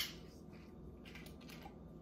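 Quiet room tone: a faint low hum with no distinct sound standing out.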